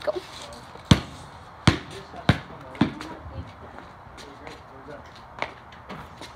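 A basketball bouncing on hard ground four times in quick succession, each bounce a little sooner than the last, then a fainter knock near the end.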